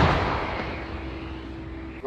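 The rolling, fading echo of a shot from an AHS Krab 155 mm self-propelled howitzer, dying away over about a second, over a steady low hum.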